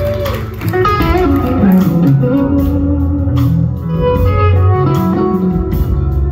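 Live blues-rock band playing, led by an electric guitar whose notes bend in pitch over a drum kit's steady beat.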